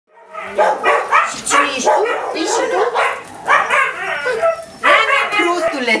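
Several dogs barking, yipping and whining excitedly, one short high call after another with hardly a pause.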